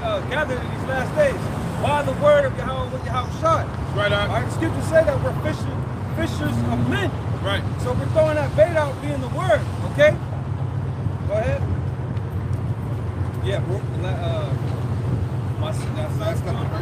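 Indistinct talking, clearest in the first ten seconds and fainter afterwards, over a steady low rumble.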